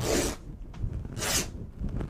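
Woven quilting fabric being torn by hand across its width: two short ripping pulls about a second apart.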